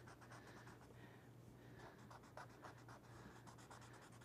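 Faint scratchy rubbing of a paper blending stump worked over charcoal shading on drawing paper, in many quick back-and-forth strokes.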